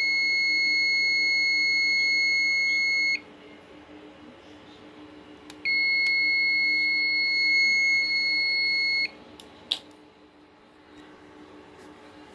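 HP BL460c G6 blade server's system beeper sounding long, steady, high-pitched beeps: one stops about three seconds in, and after a gap of about two and a half seconds another lasts about three and a half seconds. The beeping is the server's alarm for a memory error at power-on.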